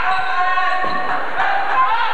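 Basketball bouncing on a hardwood gym floor as the players run the court, with a few sharp bounces about halfway through, over the steady chatter and shouts of spectators.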